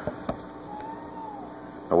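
1941 Howard 435A shortwave receiver, tuned to a band with no stations, giving a steady hiss of static with mains hum through an external amplifier and speaker. A couple of clicks come just after the start, and a faint whistle rises and falls in pitch about a second in.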